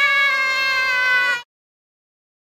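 A child's high, drawn-out squeal, one held note sliding slightly down in pitch, cut off abruptly about one and a half seconds in.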